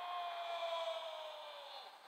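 A synthesized electronic tone, a cartoon sound effect, that glides slowly down in pitch with a few fainter higher tones above it and fades away over about two seconds.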